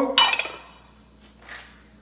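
A porcelain Chinese soup spoon clinking against a ceramic bowl as the bowl is handled and set down. The clink comes near the start, with a fainter knock about a second and a half in.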